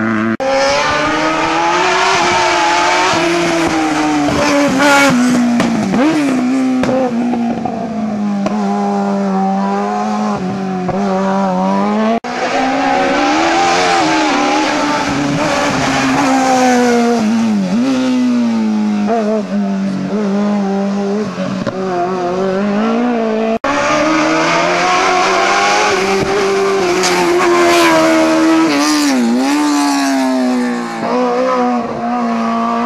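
Small racing hatchback engines revving hard through tight cone chicanes, the pitch climbing and dropping again and again as the drivers lift off, brake and accelerate. Three separate passes are heard, with abrupt cuts about 12 and 23.5 seconds in.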